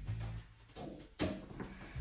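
A balloon struck with a handheld cutting board: one sharp smack about a second in, with faint low music underneath.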